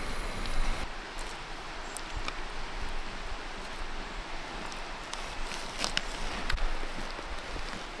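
Steady outdoor hiss of wind and rustling, with a few light clicks and scrapes of a metal spoon scooping yogurt onto a bowl.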